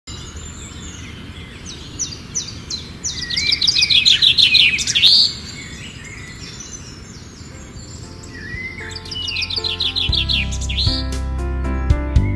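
Birdsong: fast trills of repeated chirps, loudest about three to five seconds in, with a shorter trill near nine seconds. Music with a plucked-sounding melody comes in about eight seconds in, and a low bass joins about two seconds later.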